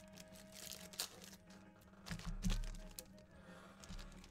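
Faint clicks and light handling noise, with a low thump about two seconds in.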